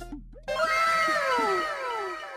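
An edited-in comic sound effect: a cascade of overlapping pitched tones, each gliding downward. It cuts in suddenly about half a second in and fades away.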